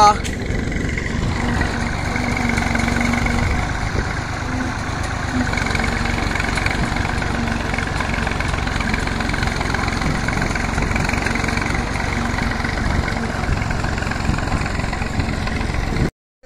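An engine running steadily throughout, with voices in the background.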